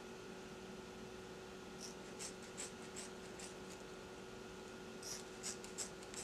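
Scissors snipping through a ponytail of weave hair pulled taut: faint short crisp snips, a run of them about two seconds in and another near the end, over a steady low hum.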